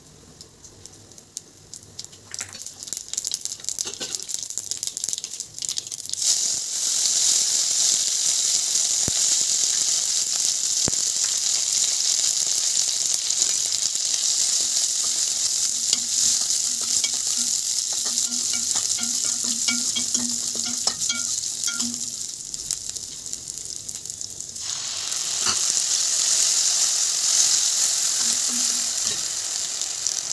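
Mustard seeds, fenugreek and dried red chillies crackling in hot oil in a nonstick kadai, with scattered pops that grow into a loud steady sizzle about six seconds in as garlic, ginger, green chillies and curry leaves fry under a stirring spatula. The sizzle eases, then surges again about five seconds from the end as chopped tomatoes go into the hot oil.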